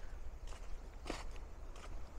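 Footsteps on a sandy dirt walking track, about three steps, faint over a low steady rumble.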